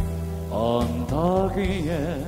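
Live singing over a backing track with a steady bass beat. A voice comes in about half a second in with gliding notes and ends on a held note with vibrato.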